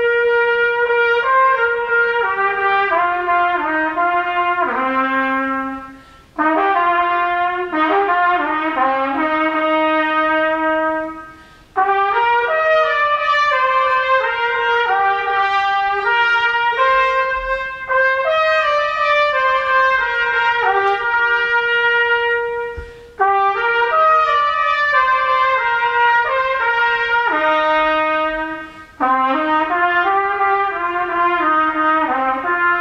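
A trumpet playing a melody in phrases of a few seconds, with four short pauses between phrases.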